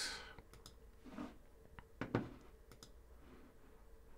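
Faint, scattered clicks of typing on a computer keyboard, the sharpest about two seconds in.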